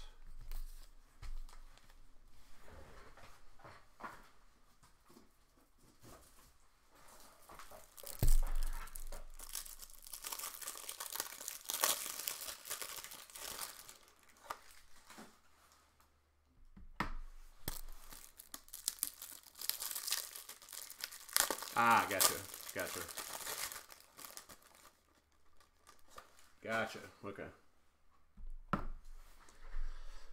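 Thin plastic wrapping crinkling and being torn in two long spells, the first starting sharply about eight seconds in and the second about halfway through, as a fresh pack of card top loaders is opened.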